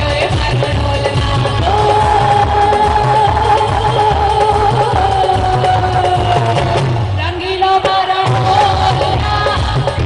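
A woman singing a song into a microphone over amplified keyboard accompaniment with a steady beat. She holds one long note from about two seconds in until about seven seconds in; the beat drops out briefly around eight seconds in, then the song carries on.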